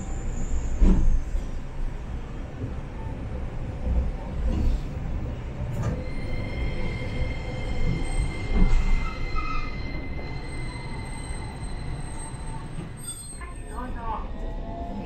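City tram running on street track, heard from inside the car: a constant rumble of wheels on rail with a few dull thumps, and from about six seconds in a steady high-pitched wheel squeal that fades out a few seconds later.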